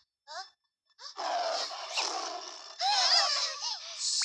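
Two short gasps, then a long, loud cartoon creature's outcry from about a second in, its pitch wavering in the second half.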